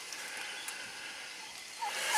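Faint steady outdoor background hiss, with no distinct sound.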